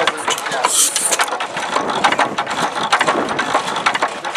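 Economy 4 HP hit-and-miss gas engine running, heard close up as a dense, rapid clicking and clattering of its gears and valve linkage, with a brief hiss just under a second in.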